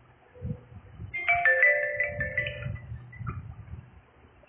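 Mobile phone alert tone: a short electronic tune of quick chiming notes, about a second and a half long, starting about a second in, with one more faint note just after. Low muffled knocks sound underneath.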